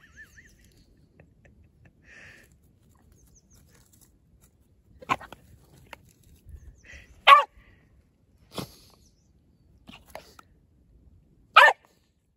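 Small terrier-type dog barking at sheep through a fence: about five short, sharp single barks spaced a second or two apart, starting about five seconds in, the loudest about seven seconds in and just before the end.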